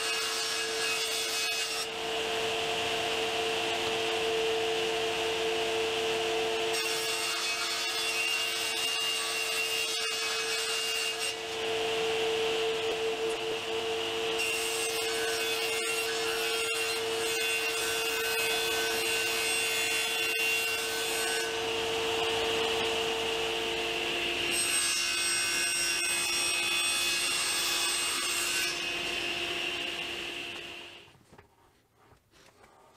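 Table saw running with a steady motor tone while plywood is ripped lengthwise into strips, one cut after another, the cutting noise changing as each pass starts and ends.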